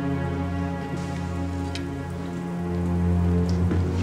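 A film score of long, sustained low tones over a steady patter of rain.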